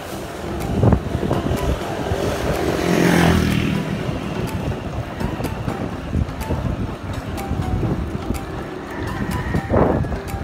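Wind buffeting the microphone of a camera riding on a moving bicycle, with a motor vehicle passing close about three seconds in, its pitch falling as it goes by. There are sharp thumps from gusts or bumps near the start and again near the end.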